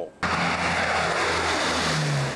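Four-engine turboprop hurricane-hunter aircraft passing low overhead: a loud, steady roar of its engines and propellers with a low drone, cutting in suddenly a quarter second in.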